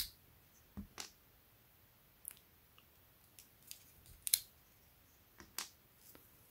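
Short plastic clicks and handling sounds as a clear protective cap is pulled off a DisplayPort cable's connector and the plugs are turned in the hands. There are about eight separate clicks with quiet gaps between them; the loudest comes a little past four seconds in.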